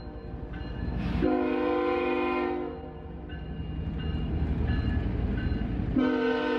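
Freight train passing with a low, steady rumble while its locomotive horn sounds a chord: a strong blast about a second in lasting about a second and a half, fainter tones after it, and a strong blast again right at the end.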